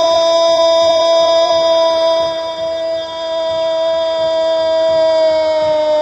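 A Brazilian radio football commentator's long goal cry, one held vowel on a steady high note without a break, sagging slightly in pitch toward the end, marking a goal just scored.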